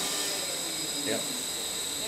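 Steady machinery noise from a wood-chip biomass boiler plant: an even hiss with a few thin, high, steady whining tones. A man says a brief "yeah" about a second in.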